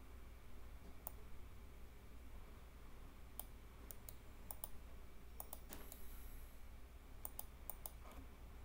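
Faint, scattered clicks of a computer mouse and keyboard, about a dozen, several in quick bunches, over a faint low hum.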